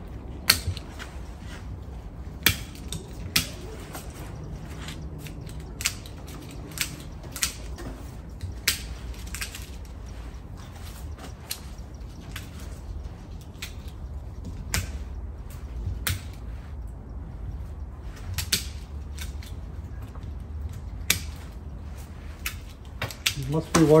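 Bonsai scissors snipping branches off a young cedar: sharp single clicks at irregular intervals, about one every second or two, over a low steady hum.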